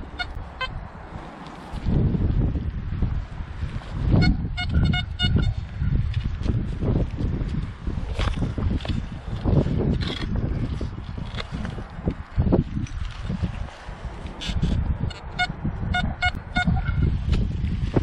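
A metal detector gives rapid electronic beeps in two short spells, about four seconds in and again near fifteen seconds, as it sounds over a target in the hole. Underneath are rough scrapes and thuds of a spade digging into turf and soil.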